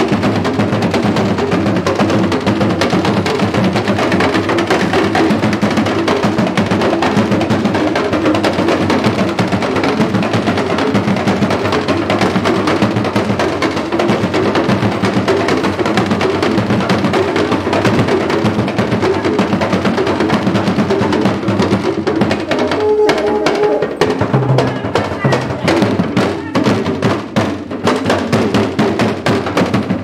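Dagomba drum ensemble of hourglass talking drums beaten with curved sticks, playing a dense, continuous dance rhythm. About three-quarters of the way through, the strokes become sparser and sharper.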